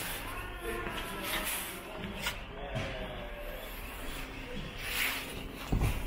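Faint, distant voices of people talking in a large room, with a low thump shortly before the end.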